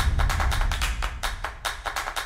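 Electronic music transition jingle: a fast, regular beat over a deep bass rumble that fades away, the beat thinning toward the end.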